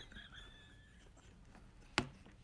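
Faint stifled laughter, a thin high squeak that fades out within about a second, followed near the end by a single sharp tap.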